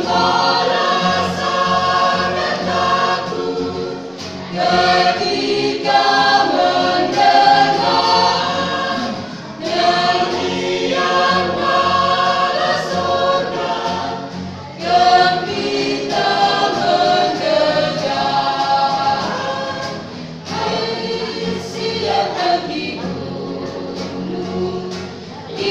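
A mixed vocal group of women and men singing together, in phrases of about five seconds separated by short breaks.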